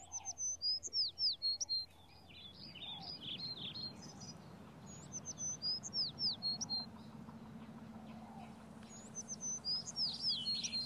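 Songbirds singing: about four bursts of quick, high chirps and downward-sliding whistles with short gaps between them, the first burst the loudest.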